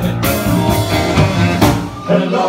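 Live rhythm-and-blues band playing an instrumental passage between vocal lines: two saxophones blowing over a steady drum beat.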